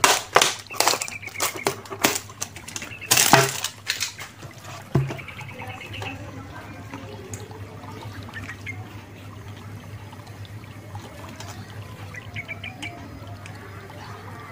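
Thin plastic drinks bottle crackling and crinkling as it is gripped and handled, a quick run of loud sharp cracks over the first four seconds, then a single thump. After that only a low steady hum with faint small taps.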